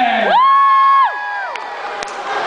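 Two high-pitched shrieked whoops from the crowd overlapping: each slides up, holds one steady note for about a second, then drops away, the second a little lower and ending later. Crowd noise continues underneath.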